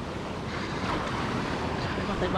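Wind buffeting the microphone over the steady rush of sea surf breaking against rocks.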